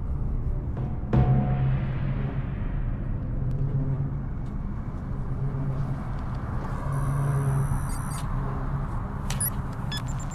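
Science-fiction soundtrack effects. A sudden low boom comes about a second in, followed by a low droning rumble under a rushing hiss, with a brief cluster of high electronic tones a little past the middle.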